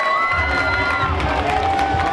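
Wrestling crowd cheering and shouting at ringside, with shrill, held yells on top. A music track's low bass comes in under the crowd about a third of a second in.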